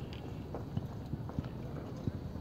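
Low rumble of wind and handling noise on a phone microphone, with a few faint, soft knocks.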